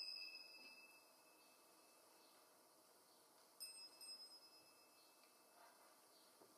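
Altar bells ringing at the elevation of the chalice, the ring dying away over the first second. A second, shorter and fainter ring comes about three and a half seconds in.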